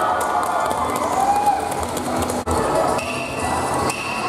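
Crowd noise at a street dance parade, with voices calling out and sharp clacking, while the dance music is faint. Near the end a steady high tone comes in.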